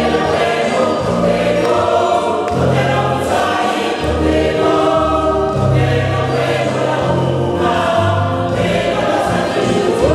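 Mixed choir of women and men singing a gospel song in harmony, with keyboard accompaniment holding low bass notes that change about every second.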